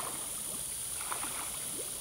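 Lake water sloshing and lapping around a swimmer who has just ducked under, with a few small splashes, over a steady high hiss.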